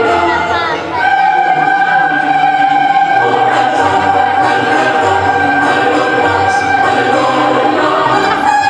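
Choral music in an operatic style, with voices holding long sustained notes. There is a brief sliding phrase about a second in.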